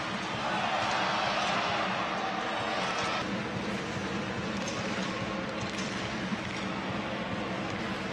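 Ice hockey arena crowd noise: a steady din of many voices in the rink. It is a little louder for the first three seconds and changes about three seconds in, where the footage cuts to another play.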